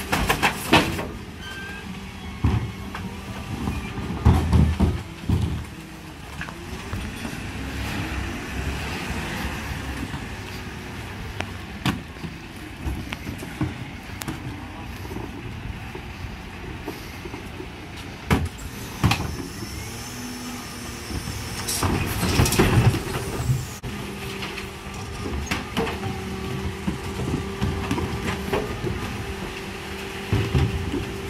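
Mercedes Econic bin lorry with a Geesink Norba MF300 body running at the kerb, its engine and hydraulics giving a steady hum with a rising whine partway through as the rear lifters work. Wheelie bins and food caddies are rolled up and tipped, with several loud bangs near the start, a few seconds in and again around two-thirds of the way through.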